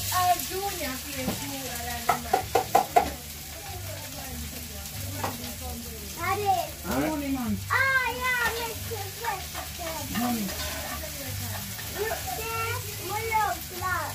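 Chopped seasoning frying in a pan on a gas stove, a steady sizzle that starts as it goes into the hot pan. A quick run of sharp taps comes about two seconds in, the loudest part.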